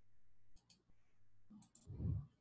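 Faint computer mouse clicks: two quick double clicks about a second apart, followed by a soft low thump at the end.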